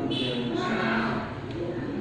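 A boy's drawn-out hesitation hum, a voice held on one low sound while he thinks of his answer.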